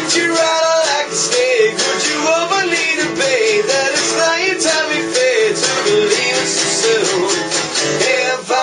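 Acoustic guitar strummed steadily, with a man singing a melody over it.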